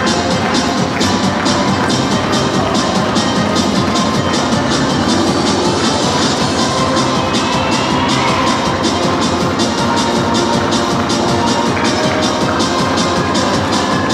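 Music with a steady, fast beat: the accompaniment to a rhythmic gymnastics ribbon routine.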